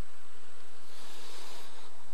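Steady hiss from a live microphone and sound system, with no voice on it.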